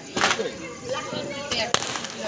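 Firecrackers inside a burning Ravan effigy going off: two sharp cracks about a second and a half apart.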